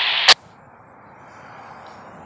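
A railroad radio transmission heard over a scanner cuts off with a sharp squelch click about a third of a second in, leaving only faint steady background noise.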